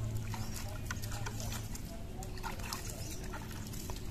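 A cow lowing: one low, steady moo lasting about a second and a half at the start, with scattered short clicks behind it.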